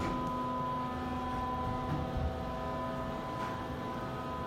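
Otis elevator machinery heard from inside the closed cab: a steady hum of several constant tones over a low rumble.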